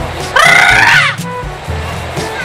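A loud, high-pitched shout or scream lasting under a second, starting about a third of a second in, over background music with a steady low beat.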